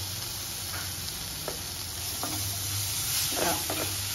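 Chopped tomatoes and onion-spice masala sizzling steadily in hot oil in a non-stick kadhai, with a few light scrapes of a plastic spatula stirring them in.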